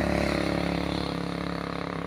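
A motorcycle passing along a dirt road, its engine running steadily and fading slowly as it moves away.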